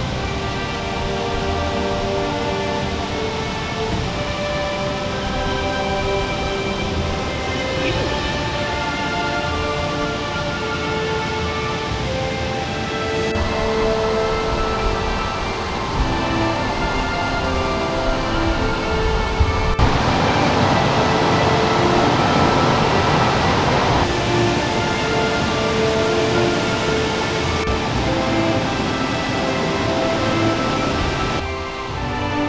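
Background music with held notes over a steady rush of running water, which swells louder about two-thirds of the way through.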